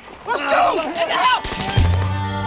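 Men's voices shouting with a few sharp cracks mixed in. Near the end a low, steady music drone sets in.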